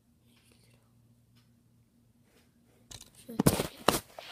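Faint room tone with a low hum, then about three seconds in a sudden burst of loud knocks and rubbing that lasts about a second, as the recording device is handled and shifted toward the tabletop.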